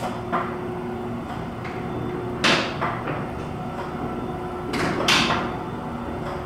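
Elevator car travelling up its hoistway, heard from the car roof: a steady running hum with two sharp clacks about two and a half seconds apart.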